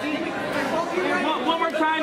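Indistinct chatter of several people talking at once, voices overlapping with no single clear speaker.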